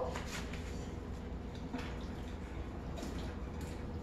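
Sliced raw potatoes being tipped from a plate into a pot of chicken curry with milk, giving a few faint soft splashes and drips over a low steady hum.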